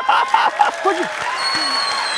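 Studio audience applauding, building up about half a second in and holding steady. A thin, steady high tone sounds over the clapping in the second half.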